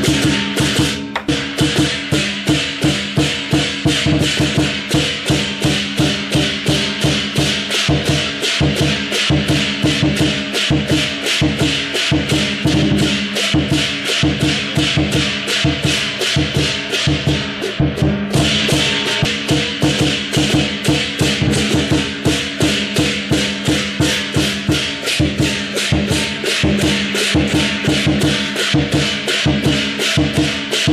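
Chinese lion dance percussion: a large drum with clashing cymbals and a gong, beating a fast steady rhythm of about three to four strokes a second. The high clashing drops out for a moment a little past halfway, then resumes.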